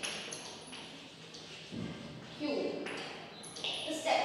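Chalk tapping and scraping on a blackboard while writing, with brief low speech about two and a half seconds in.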